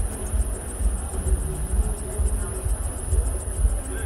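Insects trilling steadily at a high pitch over an uneven low rumble, with faint voices in the background.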